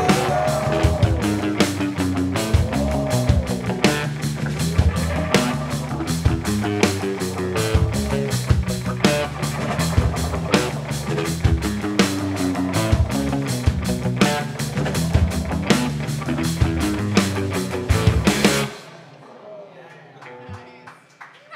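Live rock band playing an instrumental passage: electric guitars and drum kit with dense cymbal and drum hits, a lead line sliding up and down in pitch. The whole band stops together suddenly near the end.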